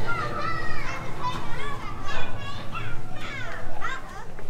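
Children's voices chattering and calling out, high and unintelligible, over a low steady rumble.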